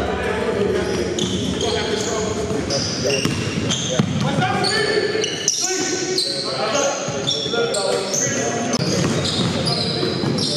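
A basketball bouncing on a hardwood gym floor during live play, with players' voices and short high-pitched squeaks echoing in a large gym.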